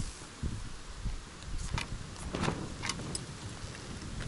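Uneven low rumble of wind on the microphone, with a handful of sharp clicks and knocks of camp gear being handled in the second half.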